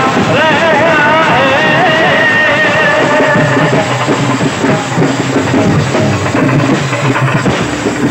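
Indian procession band music, loud throughout: a bass drum and smaller drums keep a steady beat. A lead melody bends up and down over the drums in the first three seconds or so, then drops back, leaving mostly drumming.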